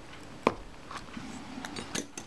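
Light metallic clicks from handling a steel lens spanner wrench and a camera's shutter assembly: one sharp click about half a second in, then a few fainter ticks near the end.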